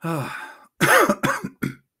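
A man clears his throat once, then says a few words.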